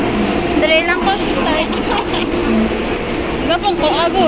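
Indistinct chatter of several passengers on a metro platform, over a steady low hum.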